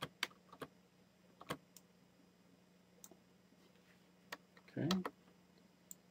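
Faint clicks of a computer mouse and keyboard while working in 3D modelling software: four in quick succession in the first second, then single clicks at irregular gaps.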